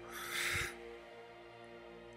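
A short breathy exhale, like a sigh, into a headset microphone, lasting about half a second just after the start, over soft background music.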